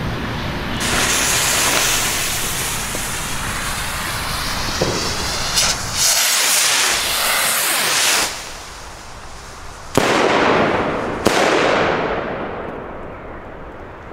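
Pyroland Ignis ball-shell rockets firing: a rushing hiss for several seconds as they climb, then two sharp bangs a little over a second apart as the shells burst, the sound fading out after the second.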